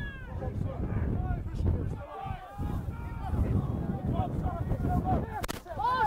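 Distant shouts and calls of rugby players around a ruck, over a steady low rumble.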